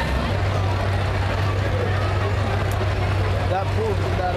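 Several demolition derby stock cars' engines running together in a steady low drone, with voices from the crowd mixed in.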